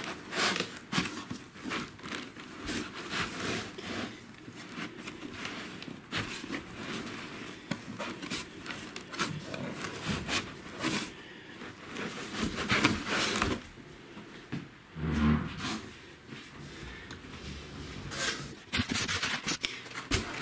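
Cardboard box and packing material being handled: irregular scrapes, rubs and crinkles as flaps are pushed aside and foam and bubble-wrapped parts are moved about.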